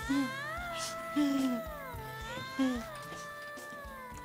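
Background score of long held tones sliding slowly in pitch, with three short, falling closed-mouth "mmm" hums from a woman savouring a mouthful of food.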